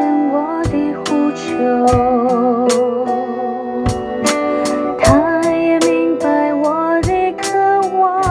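Acoustic drum kit played with sticks along to a recorded worship song: a steady beat of drum and cymbal hits over sustained backing chords and a wavering melody line.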